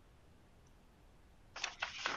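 Near silence of a video-call line, with a few faint short noises in the last half second.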